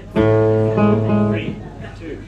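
Acoustic guitar strummed: one chord struck sharply just after the start, ringing for about a second and dying away into quieter playing.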